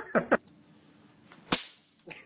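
A brief voice at the start, then a single sharp crack about one and a half seconds in.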